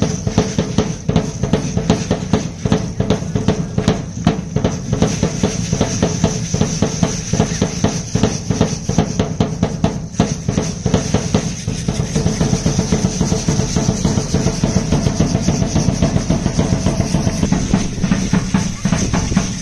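Dance drum beating a fast, steady rhythm, with the dancers' hand rattles shaking along in time.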